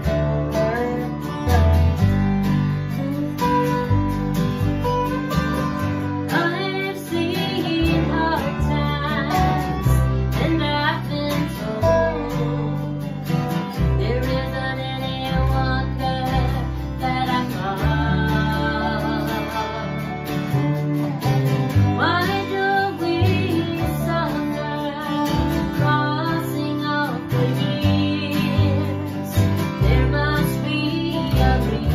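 Acoustic string band playing a country-style song: an acoustic guitar strumming chords over upright bass notes, with a lap-played resonator guitar (dobro) sliding and wavering through the melody.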